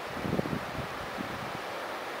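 Wind buffeting the camera microphone in irregular low gusts, strongest in the first half second, over a steady hiss.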